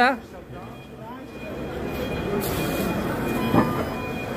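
Hyundai 16B-9F battery-electric forklift driving, growing louder over the first two seconds as it comes closer, with a single knock about three and a half seconds in.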